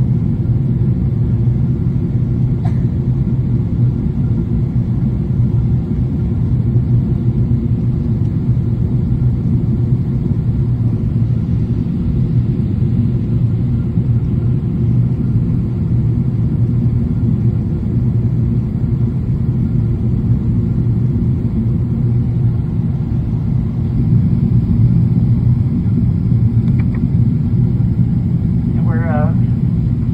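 Steady, low airliner cabin noise in flight: the drone of the jet engines and rushing airflow heard from a window seat. A voice on the cabin speakers begins near the end.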